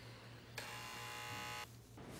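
A mobile phone on vibrate buzzing against a wooden tabletop for an incoming call, one buzz lasting about a second.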